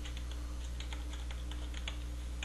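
Computer keyboard being typed on: a quick, irregular run of faint key clicks entering a number, over a steady low hum.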